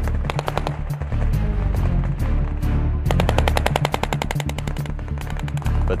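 Rapid bursts of machine-gun fire, the longest starting about three seconds in, over background music with a steady low bass.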